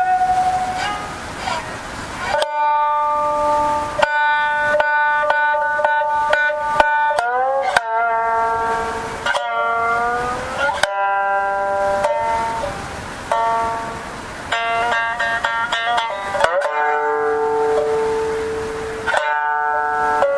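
Jiuta shamisen played solo: single notes plucked with the plectrum, ringing on, some of them bent in short pitch slides, with a few brief breaks between phrases.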